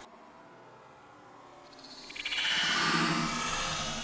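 Water splashing and sloshing in a saltwater aquarium as a hand moves through it, heard slowed down. It is faint at first, then swells into a louder, fluttering wash about two seconds in.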